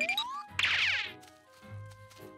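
Cartoon soundtrack music with comic sound effects: a rising whistle-like glide that ends about half a second in, then a brief swishing burst, and soft held music tones after it.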